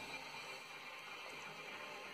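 Faint music from a radio playing in the room.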